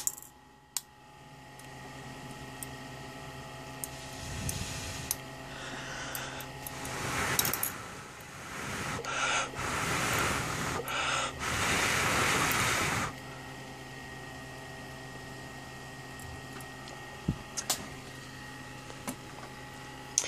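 High-voltage discharge from a ZVS-driven flyback transformer hissing in several loud bursts between about four and thirteen seconds in, as corona and arcs play over a glass light bulb, over the driver's steady electrical hum. A few sharp clicks stand out near the start and near the end.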